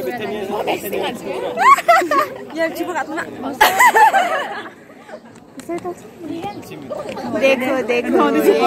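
A group of young people chattering and talking over one another, with louder, higher-pitched voices about two and four seconds in.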